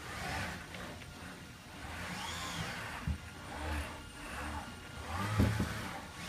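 Mitsubishi RV-12SL six-axis industrial robot arm running through a motion cycle, its servo drives whirring unevenly, with a tone that rises and falls about two seconds in and a louder low knock near the end.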